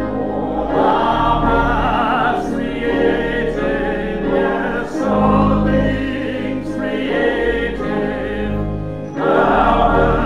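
A small church choir singing a slow hymn with vibrato over sustained keyboard accompaniment. The phrases swell and ease off, with short breaths about halfway through and again near the end.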